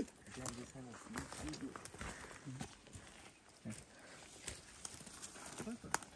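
Quiet, indistinct men's voices murmuring, with a few faint clicks and knocks.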